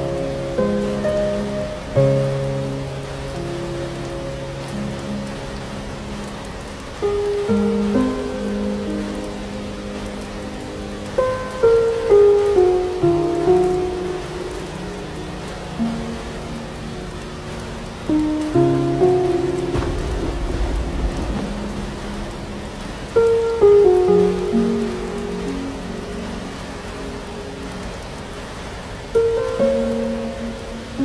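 Steady rain with slow, gentle instrumental music: sparse melodic notes that ring and fade one after another. A brief low rumble of thunder comes about two-thirds of the way through.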